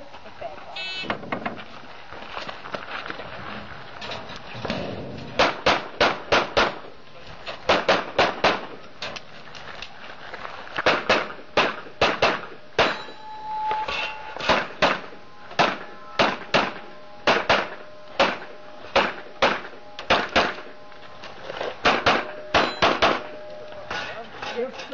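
A shot timer's start beep about a second in, then a practical-shooting pistol stage: strings of rapid handgun shots, two to five at a time with short pauses as the shooter moves between positions, some thirty shots in all.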